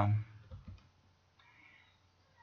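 A man's lecturing voice trails off, then two faint short clicks come about half a second in.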